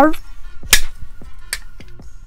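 Folding camp shovel clacking as it is folded: two sharp metal clicks about a second apart, with a few faint ticks, over quiet background music.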